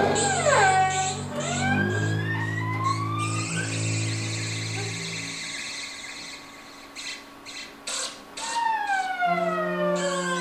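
Free-improvised live music: low bowed cello notes held under long sliding tones that rise and later fall in pitch, siren-like. The low notes stop about halfway, and a few short knocks come near the end.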